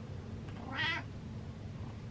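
A domestic cat gives a single short meow about a second in.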